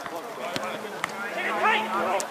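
Men shouting calls across an outdoor football pitch, loudest near the end, with two sharp knocks about half a second and a second in.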